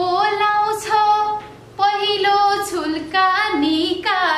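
A woman singing lines of a Nepali poem to a simple melody, holding the notes, with a short break about a second and a half in.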